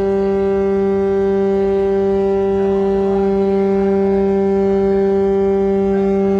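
Ship's horn of the roll-on/roll-off passenger ferry M/V Santa Alberta, sounding one long, steady blast on a single low note rich in overtones.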